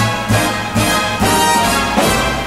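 Instrumental backing of a swing-era jazz vocal recording, the band playing a short fill with a steady low bass pulse and no singing.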